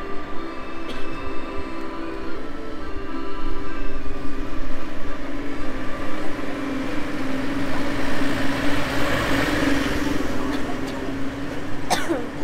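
Street accordion playing, with held notes and chords. In the second half, the noise of a passing vehicle swells and then fades near the end.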